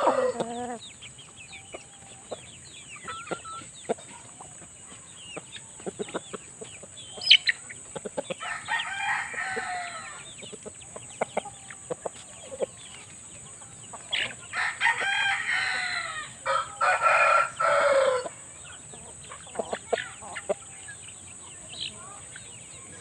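Gamefowl roosters crowing: one crow about a third of the way in and a longer one, broken once, near the end that falls in pitch as it closes, with short clucks scattered between.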